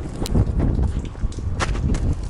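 Footsteps in snow, with a few sharp knocks over a steady low rumble of wind on the microphone.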